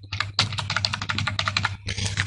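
Computer keyboard typing: a quick run of keystrokes entering a phone number.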